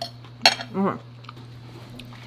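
Metal fork clinking against a plate as it is set down, with one sharp clink about half a second in.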